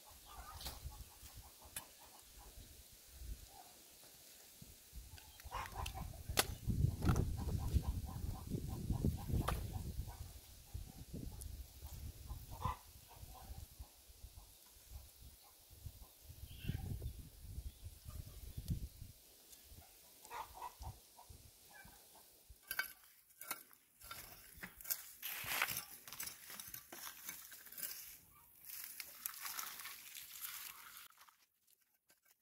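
Chickens clucking, with rustling and crackling of dry weeds and dead vines being pulled up and raked, the crackling thickest in the last third.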